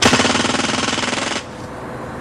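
CO2-powered pellet gun firing zirconium spark-hit capsules fully automatic into a cinder-block wall: a rapid burst of ten hits in about a second and a half that stops abruptly.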